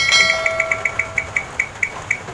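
A phone's spin-the-wheel app ticking as its wheel spins down, the clicks slowing from about seven a second to about four. An electronic tone sounds for the first second and a half.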